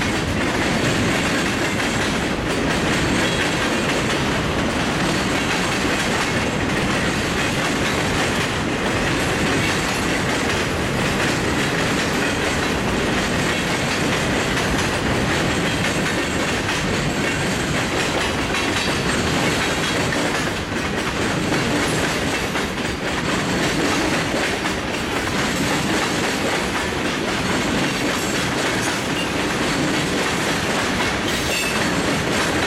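A CSX freight train's cars, mostly tank cars with a coil car and a boxcar, rolling steadily past: a loud, continuous noise of steel wheels running on the rails.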